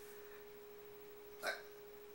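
Faint steady hum, with one short mouth sound about a second and a half in as frosting is tasted from a finger.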